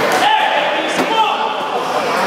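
A rubber handball struck in a one-wall rally: one sharp smack about a second in, over players' voices.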